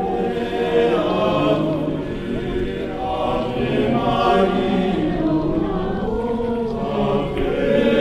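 A choir of voices singing a slow hymn together.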